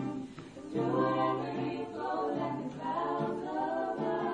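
A small vocal group singing in close harmony, several voices over a sustained low part. The singing thins briefly about half a second in, then the voices come back in together.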